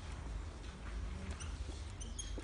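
Dry-erase marker squeaking and scratching on a whiteboard in short strokes as a word is written, over a steady low room hum.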